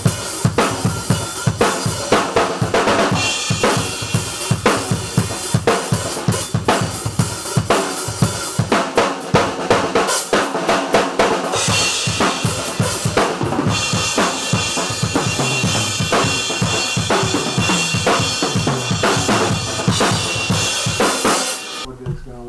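Late-1960s Rogers Holiday drum kit with a Gretsch Bell Brass snare and Sabian and Paiste cymbals, played in a steady rock beat. Dense kick and snare strokes sit under a constant wash of cymbals, which turns brighter about twelve seconds in.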